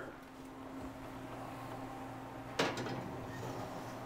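A wall oven being opened and a dish slid onto its metal rack: one sharp clunk about two-thirds of the way through, over a low steady hum.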